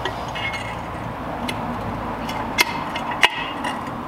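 Small metal clicks and clinks of scooter headset parts being fitted into the head tube: three sharp clicks, the loudest about two and a half seconds in, with lighter handling noise between.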